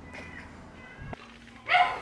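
A dog whining briefly near the end, one short pitched call that bends up and down, over faint background.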